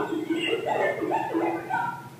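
A spoken sentence turned by computer into gibberish, in the form of sine-wave speech: a few pure tones that jump up and down in pitch at the pace of syllables, in place of a voice.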